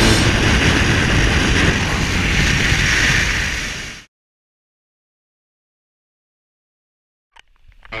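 Motorcycle riding through a road tunnel: a loud engine-and-wind roar that fades out about four seconds in, followed by dead silence.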